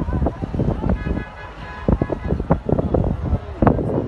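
Outdoor traffic noise with irregular sharp knocks and bangs throughout, and a car horn sounding briefly about a second in.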